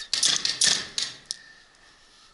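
Airsoft guns firing: a quick, irregular series of about five sharp snaps in the first second and a half, then it goes quiet.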